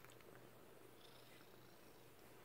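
Very faint purring of a cat being rubbed on its belly.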